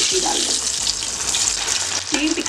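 Sabudana (sago) tikki deep-frying in hot oil in an aluminium kadai: a steady, dense sizzle as the oil bubbles hard around the freshly added patty.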